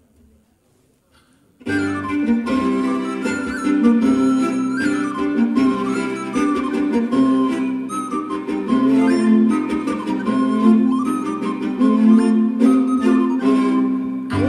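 Instrumental introduction played live by a trio of recorder, bowed viola and piano, starting suddenly a little under two seconds in after near silence. Sustained melody notes, some gliding, over steady low held notes.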